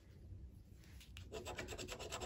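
Scratch-off lottery ticket being scratched, the coating rubbed off the play area in quick, short strokes. Faint, and starting a little over a second in.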